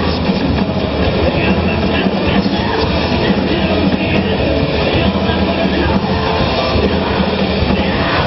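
Hard rock band playing live, loud and unbroken: a dense mix of distorted electric guitar, bass and drums heard through the hall.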